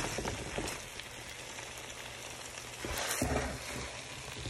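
Spatula stirring French-style green beans and shredded cheese through a thick white sauce in a pan: soft wet scraping strokes, louder about three seconds in, over a steady faint sizzle from the hot sauce.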